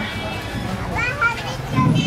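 Street background with people's voices: a short high-pitched voice about a second in over a steady hum of street noise, and a rougher low sound near the end.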